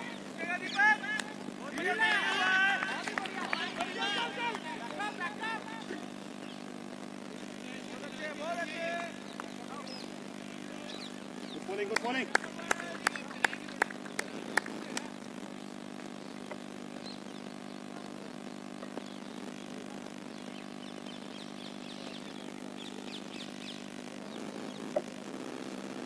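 Voices of cricket players and onlookers calling out across an open ground, loudest in the first few seconds, over a steady low hum. About halfway through comes a short run of sharp knocks, about three a second.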